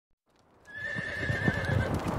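Galloping horse hoofbeats used as a sound effect in the intro of a rock track. They fade in about two-thirds of a second in as a run of uneven low thuds under a thin, high held tone.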